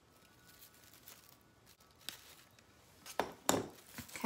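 Small crafting handling sounds: wire cutters snipping a pipe cleaner amid faint rustling of plastic deco mesh. Two sharper clicks or knocks come about three seconds in.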